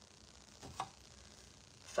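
Mostly quiet, with one brief light clink a little under a second in: a small metal scoop knocking against a glass jar while dry grits are scooped out.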